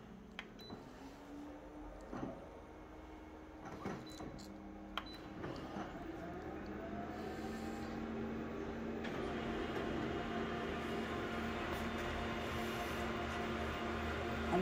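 Office photocopier starting a full-colour copy job: a few clicks, then motors spinning up with rising whines and a steady hum that grows gradually louder. A fuller whirr joins about nine seconds in as the copy prints.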